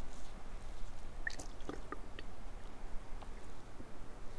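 Faint wet mouth sounds of white wine being tasted: small clicks and squishing sounds, clustered about a second to two seconds in.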